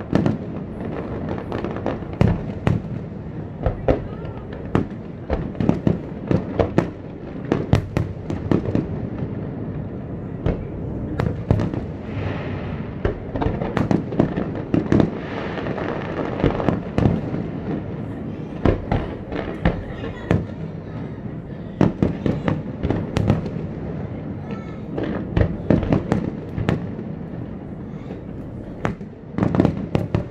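A large fireworks display: aerial shells bursting in quick succession, several sharp bangs a second over a continuous rumble.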